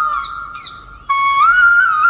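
Background music: a solo flute melody. The held note fades away in the first second, then a new phrase starts abruptly just after a second in and rises.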